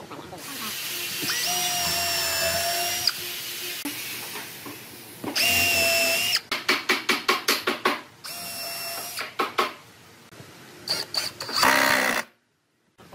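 Cordless drill with a countersink bit boring into wood in several bursts of steady motor whine, with runs of quick short spurts, about six or seven a second, as the trigger is pulsed.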